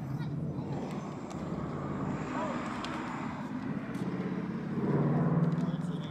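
A car engine on the street as a vehicle drives past, a steady low hum that swells to its loudest about five seconds in, with faint voices of people talking.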